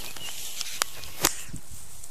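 Steady rustling of long grass with two short, sharp clicks, the first just under a second in and the second about a quarter second later.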